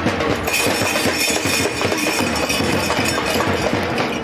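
Dense, rapid metallic clattering with a steady high ringing tone over it that comes in about half a second in: a dramatic sound-effect roll laid over the reaction shot.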